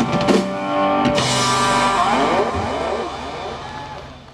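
Live rock band ending a song: a last few drum hits with a cymbal crash about a second in, then the electric guitar's final chord rings on with a few sliding notes and fades out near the end.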